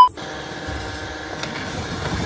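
A steady beep of the TV colour-bars test card cuts off right at the start. It gives way to a steady background noise with a low rumble and no clear single source.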